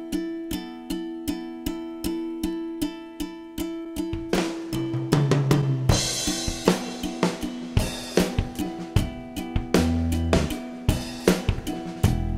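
Instrumental multitrack mix being built up one track at a time: string instruments play a steady rhythm, then a drum kit with cymbals comes in about halfway, and bass guitar joins near the end.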